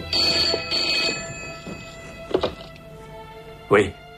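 Old desk telephone bell ringing in two short bursts, then the handset lifted with a clunk about two seconds in, over steady background music. A short loud sound comes near the end.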